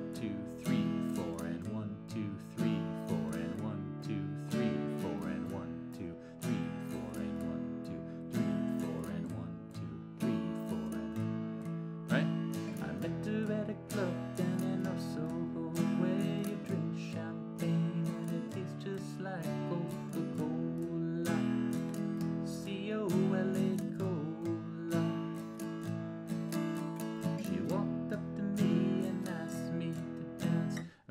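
Acoustic guitar strummed steadily through the chords E, A and D. The pattern is four down-strokes and an up-stroke to the bar, with the third beat hit hardest and fullest and the first two lighter, on the thicker strings.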